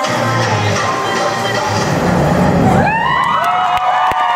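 Dance music with a heavy bass beat playing, cutting off about three seconds in as the audience breaks into cheering and high, gliding whoops.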